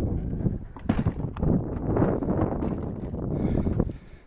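Low rumbling noise on the microphone with several sharp knocks, as the person filming climbs the entry steps and steps into a travel trailer.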